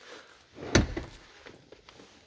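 A single dull thump about three-quarters of a second in, then faint shuffling, as a person climbs into the third-row seat of an SUV.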